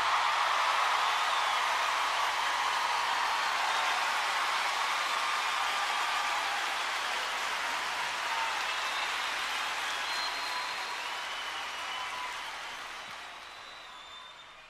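Large concert audience applauding after a song ends, a dense, steady clapping that slowly dies away toward the end.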